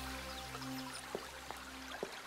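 Cartoon background music of low, held synthesizer notes that thin out around the middle. Three short, soft clicks like drips come in the second half.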